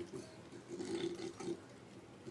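Dog chewing and licking food off a tile floor: a few irregular wet mouth sounds, loudest around the middle.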